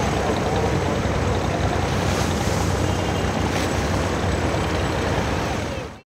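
Wooden abra water taxi under way: its engine runs steadily with water rushing along the hull, the whole sound fading out near the end.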